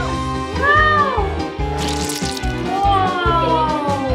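Two meow-like calls over background music: the first rises and falls in pitch, the second is a long call falling slowly in the second half.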